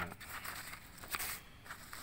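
Loose photocopied paper pages rustling as a hand turns them, with a few soft clicks, dying away after about a second and a half.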